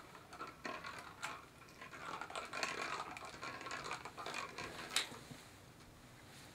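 Light plastic clattering and clicks from a clear plastic hamster ball rolling with a mouse inside it across a stone-tile floor, with one sharper click about five seconds in.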